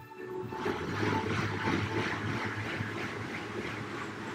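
Rogue Echo air bike's fan spinning up as pedalling starts about half a second in, then running as a loud, steady whoosh that pulses with the pedal strokes.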